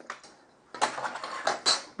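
Light clatter of hand tools being handled on a workbench: a metal rule set down and a square picked up. The clatter starts about three quarters of a second in, a run of small knocks and scrapes.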